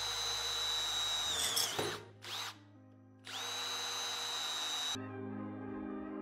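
Cordless drill running a 6 mm Gühring twist drill bit into stainless steel: two runs of steady, high motor whine. The first slows and stops about two seconds in, and the second runs from about three to five seconds in. Background music plays underneath.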